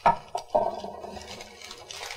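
A sharp knock, then a steady scraping, rolling noise lasting over a second: objects being handled and moved on a wooden tabletop during unboxing.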